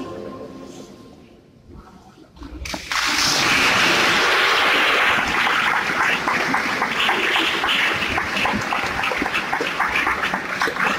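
The last notes of the dance music die away over the first two seconds, then audience applause breaks out suddenly about three seconds in: dense, sustained clapping.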